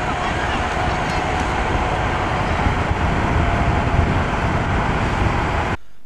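Steady outdoor background noise at a bicycle race on a village road: an even rushing hiss over a low rumble, with indistinct voices in it. It cuts off suddenly shortly before the end.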